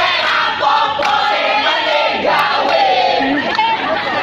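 A group of teenage students singing and chanting their class cheer in chorus, many voices loud together.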